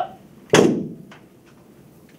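Ceremonial rifles handled by a color guard in drill: one loud, sharp clack about half a second in as the rifles are brought up to the shoulder, followed by a few lighter clicks.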